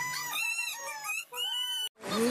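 High-pitched wordless voice-like cries, several short rising-and-falling calls, cut off abruptly near the end.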